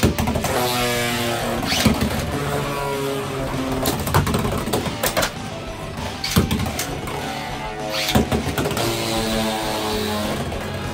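Beyblade X spinning tops launched from a ripcord launcher into a large plastic stadium, with falling whirs about three times, then the tops spinning on the plastic floor and clacking against each other.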